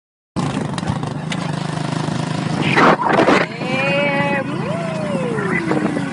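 Motorbike engine running steadily under wind noise on the microphone as two riders move along, with loud gusts about halfway. Near the end a woman's voice holds a high note, then slides down in one long falling tone.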